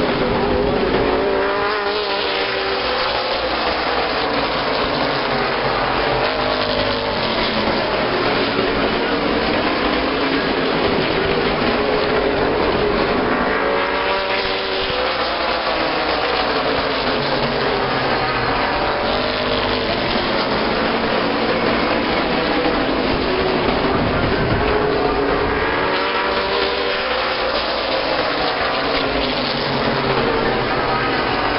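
A pack of late model stock cars' V8 engines running at racing speed on a short oval, rising and falling in pitch as the field sweeps past about every twelve seconds.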